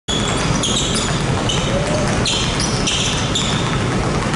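Several basketballs being dribbled at once on a hardwood gym floor, with many overlapping bounces. Short high-pitched squeaks come again and again throughout, typical of basketball shoes on the court.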